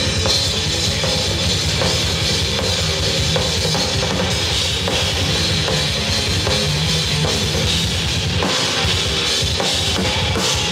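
Live heavy metal band playing an instrumental passage: drum kit with rapid bass-drum beats and cymbals under distorted electric guitars and bass, loud and unbroken.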